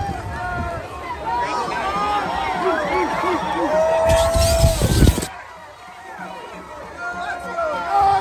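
Crowd of fans, many voices chattering and calling out at once. A little after three and a half seconds in, one long held shout rises over the crowd, joined by a loud rush of noise, and both cut off suddenly just after five seconds. Quieter crowd voices follow.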